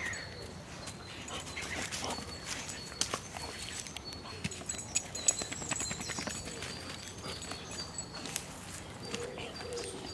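A black Labrador retriever's paws crunching and rustling through dry leaf litter and twigs, with irregular sharp snaps and clicks. Birds call in the background, and a low cooing call starts near the end.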